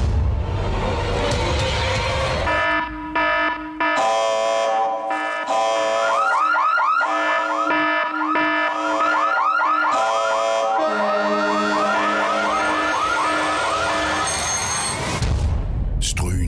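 A loud alarm-like sound effect over held tones: a rapidly repeating rising warble, about three or four sweeps a second, that sets in a few seconds after a low rumbling start and stops shortly before the end.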